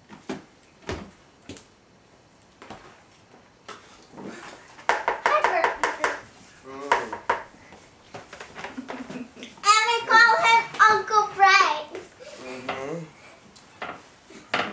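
A few light clinks and taps of metal tongs against a mixing bowl and glass baking dish as spaghetti is moved into the pan in the first few seconds, then children's voices talking, loudest in the second half.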